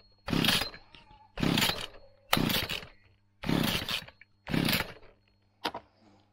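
Petrol brushcutter being pull-started: five hard pulls of the recoil starter cord about a second apart, then a short weak one near the end, the engine turning over without catching. The owner blames air in the fuel system: the primer bulb won't fill and bubbles show fuel flowing back through the feed line.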